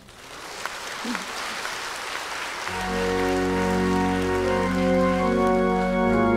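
Congregation applauding as a sung solo ends, the clapping building up over the first seconds. Partway through, sustained organ chords with a deep bass come in and continue under it.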